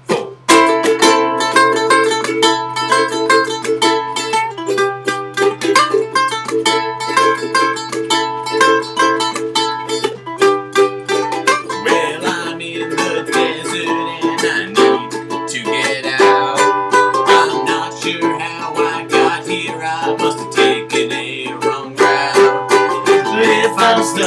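Two ukuleles strummed together in a steady rhythm, playing the instrumental intro of a song; the strumming starts about half a second in.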